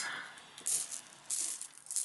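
UK 1p coins clinking together as a hand handles a pile of pennies, in three short jingles, the first a little under a second in.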